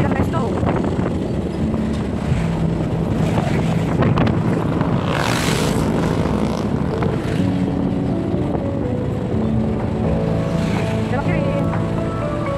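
Motorcycle ride heard from the rider's microphone: the engine runs steadily under wind rushing over the mic, with a strong gust about five seconds in.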